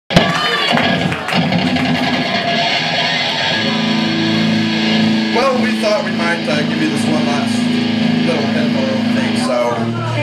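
Live rock band with electric guitar and drums playing, then a low guitar note held ringing steadily from about three and a half seconds in, with a voice over it for a moment around the middle.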